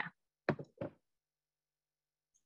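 Two brief knock-like taps about a third of a second apart, then silence.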